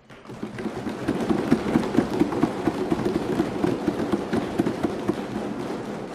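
Crowd applause: a dense patter of many hands that swells over the first second and slowly thins toward the end.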